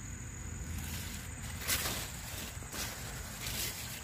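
Steady high-pitched trill of insects in the background, with a couple of faint rustles about two and three seconds in over a low rumble.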